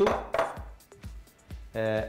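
A brief ringing clink of a metal spoon against a small glass bowl, then a soft click about a second in.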